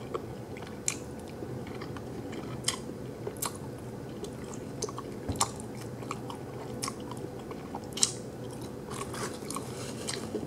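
A person chewing a mouthful of food, with sharp wet mouth clicks and smacks at irregular intervals.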